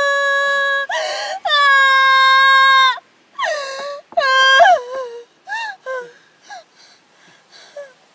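A young woman wailing loudly in two long, drawn-out high cries, then breaking into shorter falling sobs that grow fainter and sparser toward the end.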